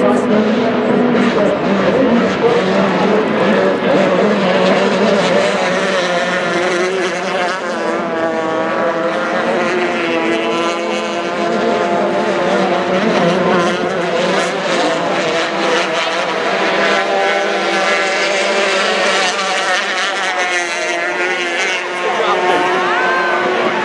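Several Formula 350 racing hydroplanes' 350 cc two-stroke outboard engines running at high revs. Several engine notes overlap and their pitch shifts up and down as the boats pass and round the turn buoys.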